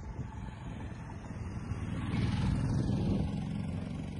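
Outdoor traffic noise: a road vehicle passing, swelling to its loudest between about two and three seconds in and then fading, over a steady low rumble.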